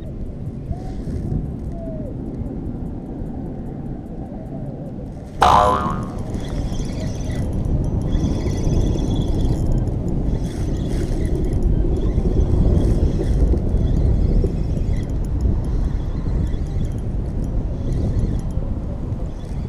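Wind noise on the microphone, broken about five seconds in by a sudden loud twang. After that comes the faint whir of a spinning reel being cranked over the wind.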